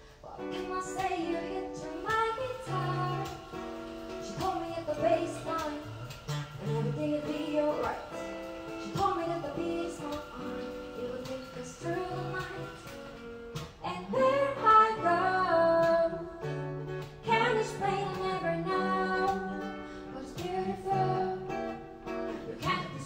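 Live acoustic duo: a steel-string acoustic guitar playing the accompaniment while a woman sings the melody over it. The music dips briefly about 13 seconds in.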